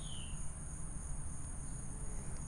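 A steady, high-pitched insect chorus, with a short falling chirp right at the start.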